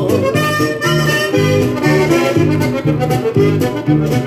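Norteño song played from a vinyl record: an instrumental accordion passage between sung lines, over a steady bass and guitar rhythm.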